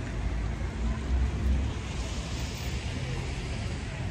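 Wind rumbling on the microphone over steady outdoor background noise, the rumble swelling about a second in, with a hiss joining about two seconds in.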